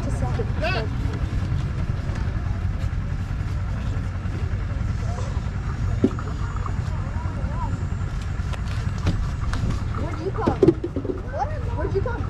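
Voices talking nearby over a steady low rumble, with a single sharp knock about six seconds in.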